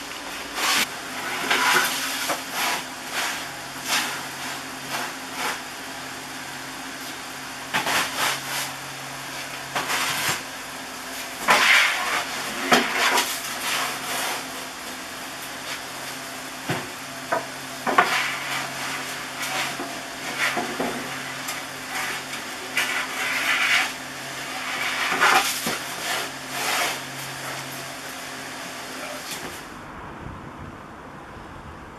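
Baked loaves being unloaded from a wood-fired oven: a metal peel scrapes along the hearth, with irregular knocks and clatters as loaves are lifted out and handled.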